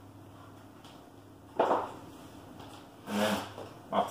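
Black plastic milk crates being handled and set down on a wood floor: a sharp knock about one and a half seconds in, then a longer clatter near the end.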